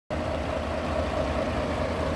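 Mercedes-Benz Actros truck's diesel engine idling steadily, a low, even sound.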